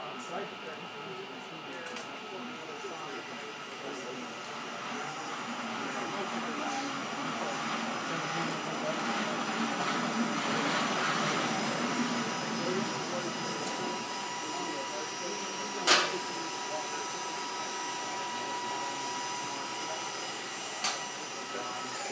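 Dematic automated storage-and-retrieval crane travelling along its aisle rail with a steady motor hum and whine that swells toward the middle as it approaches, then eases. A sharp clunk sounds about two-thirds of the way through, and a smaller one near the end, as the crane reaches the pick station with its bin.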